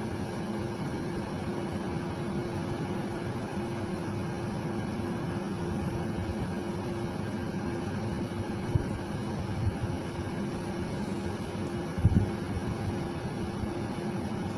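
A steady low machine hum with a constant pitched tone, and a couple of brief soft bumps about nine and twelve seconds in.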